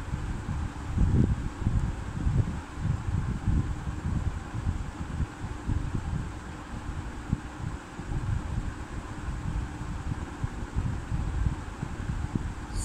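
Low, uneven rumble of moving air buffeting the microphone, with a faint steady hum underneath.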